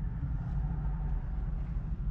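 A steady, low outdoor rumble with no speech.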